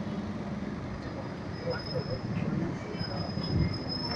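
Street background noise: a steady low traffic rumble with a faint high-pitched whine on top and some indistinct murmuring.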